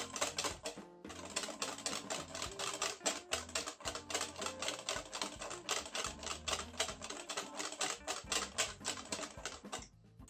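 Wire balloon whisk beaten fast by hand against a stainless steel bowl, a rapid run of clicking strokes several times a second with a brief pause about a second in, as egg and sunflower oil are whisked into a thick mayonnaise.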